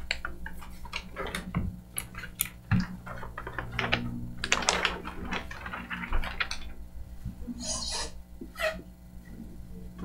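Large paper plan sheets rustling and crinkling as they are lifted, unfolded and flipped on a table, with scattered small clicks and knocks of handling, over a steady low room hum.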